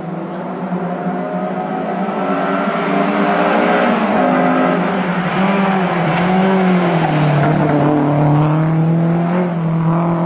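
Classic rally car's engine approaching at speed and growing louder, the revs rising and falling through gear changes, dropping about halfway through and then holding steady as the car comes close.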